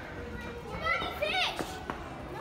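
Young children's high-pitched voices shouting and squealing in play, loudest in a short burst in the middle, over the murmur of a busy play room.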